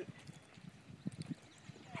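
Quiet outdoor background with a few faint, light taps scattered through it.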